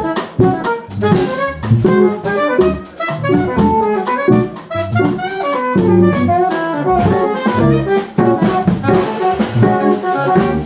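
Jazz trio playing live: alto saxophone, electric keyboards and drum kit, with quick runs of notes over frequent cymbal strokes.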